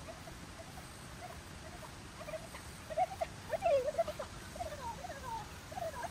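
A small dog whining and yipping in short, high squeaks, thickest and loudest about three to four seconds in, the excited noises of a dog running an agility course.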